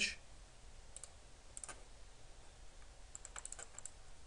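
Faint clicks of a computer mouse and keys: one click about a second in, another a little later, then a quick run of several clicks near the end.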